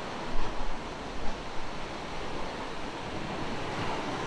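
Surf breaking and washing up a sandy beach as a steady rush, with wind rumbling on the microphone, strongest in the first second or so.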